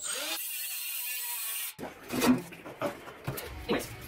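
A cordless power tool runs on the exhaust fasteners under a car with a steady whir for nearly two seconds, then stops. Scattered knocks and clanks follow as the muffler is worked loose and taken off for a muffler delete.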